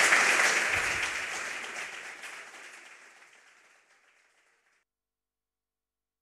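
Audience applauding at the end of a speech, the clapping fading out over the first four to five seconds.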